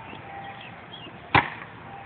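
A basketball bouncing once on a hard-packed dirt court: a single sharp thud about a second and a half in.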